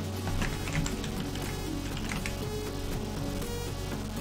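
Background music playing steadily, with short runs of computer keyboard typing about half a second in and again around two seconds in.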